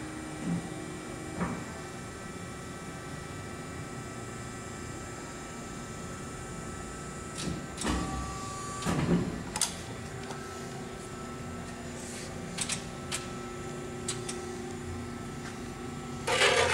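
Hydraulic press brake under power, humming steadily, with scattered clunks and knocks. The loudest cluster comes about eight to nine and a half seconds in, and a lower steady tone joins about ten seconds in.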